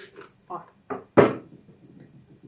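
A plastic trigger spray bottle of glass cleaner gives a short spritz, then lands with a sudden knock on a wooden workbench about a second in, the loudest sound here.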